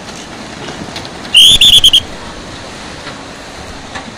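A short, shrill, trilling whistle about a second and a half in, lasting about half a second and the loudest thing heard, over the steady rush of the flooded river.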